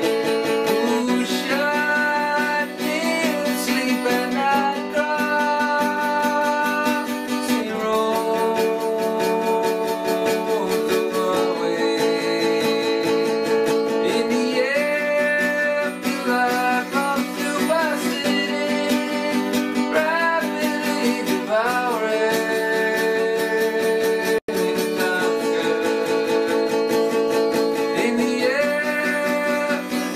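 Acoustic guitar playing chords with a voice singing the melody over them; the chords change every few seconds. A split-second dropout cuts the sound about two-thirds of the way through.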